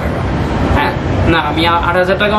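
A man speaking, with a low hum of background noise.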